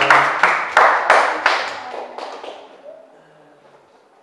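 Acoustic guitar strumming the closing chords of a song, about three strokes a second, dying away after about two and a half seconds.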